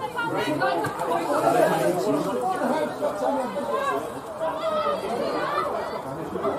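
Several people's voices talking and calling over one another, overlapping so that no words stand out.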